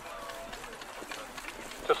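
Soft hoofbeats of trotting harness horses on grass, under faint distant voices; a man's commentary starts loudly right at the end.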